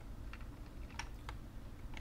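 A few faint, scattered clicks of computer keyboard keys over a low hum.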